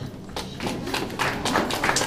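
Scattered, irregular light taps and knocks in a room, with faint voices in the background.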